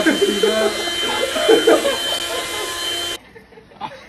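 A small electric vacuum motor running steadily with a high whine. It stops abruptly about three seconds in.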